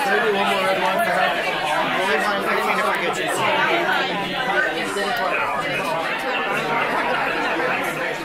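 Indistinct chatter of many voices talking at once around a dinner table, with no single voice standing out.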